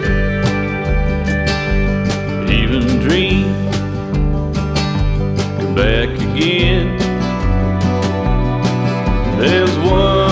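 Instrumental break of a country song on acoustic guitar, bass and drums, with a lead line that slides up in pitch three times.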